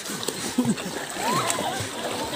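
Swimmers splashing in muddy floodwater, with faint voices of other people calling out at a distance.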